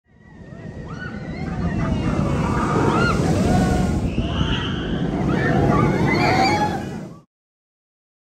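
Vekoma steel roller coaster train rumbling along its track as it passes close by, with riders screaming over it. The sound fades in over the first couple of seconds and cuts off suddenly near the end.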